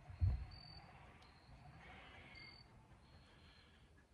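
Quiet outdoor background with a single soft low thump about a quarter second in, then faint high-pitched chirps over a low hiss.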